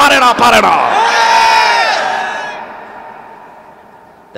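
A man preaching loudly through a PA system: a burst of shouted speech, then one long drawn-out call held for over a second that fades away in the echo of the hall.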